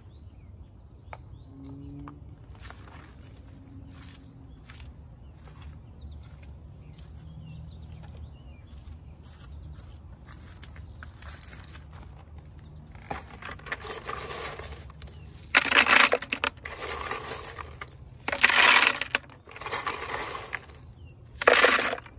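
Marble-chip gravel crunching and rattling as it is scooped and handled, in four loud bursts of about a second each during the second half. The first half is only a low steady background.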